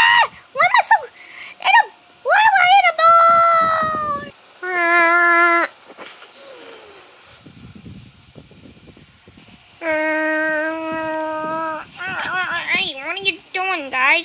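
A child's voice making wordless high-pitched squeals and cries, in short rising-and-falling calls at first, then longer notes. A long steady held note comes about ten seconds in, and wavering calls near the end.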